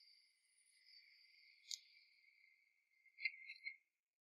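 Faint crickets chirping in a steady high trill, with a few louder chirps near the end before it cuts off suddenly. A single soft click about a second and a half in.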